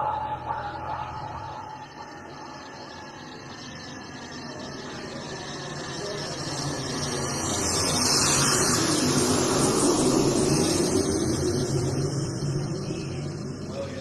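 Synthesizer noise wash swelling slowly like a passing jet, building for several seconds to a peak past the middle and then fading away.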